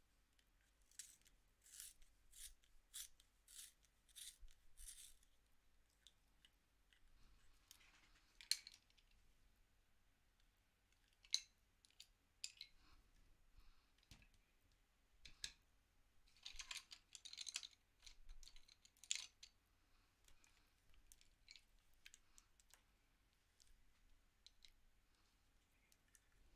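Faint scraping strokes of a hand-held sharpener shaving a Prismacolor colored pencil: a quick run of about seven twists in the first five seconds, then scattered single scrapes and a denser burst a little past the middle. This is a sharpener that keeps breaking the soft pencil tip.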